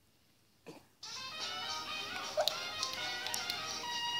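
A moment of silence broken by a single click, then music starts about a second in: held notes with a few sharp ticks over them.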